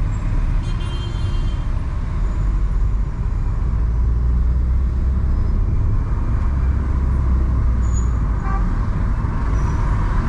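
Steady low rumble of a car driving through city traffic, road and engine noise. A brief high-pitched tone sounds about a second in.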